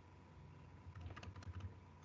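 Faint, irregular clicking at a computer keyboard: a run of quick clicks from about half a second in.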